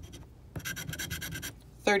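Scratch-off lottery ticket being scratched: a quick run of short scraping strokes, about ten a second, for about a second, as the coating is rubbed off the ticket's numbers.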